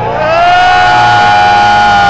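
Amplified electric guitar feedback from a live metal band: several high tones slide up together in the first half-second and then hold steady and loud.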